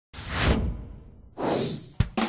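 Two whoosh sound effects of a title intro, about a second apart: the first swells to a peak about half a second in, and the second comes in near the end and fades.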